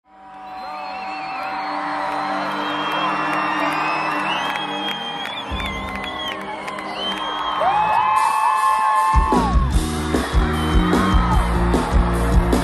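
Live concert music with the crowd whooping and yelling over sustained held tones. About nine seconds in, heavy bass and drums come in with a steady beat.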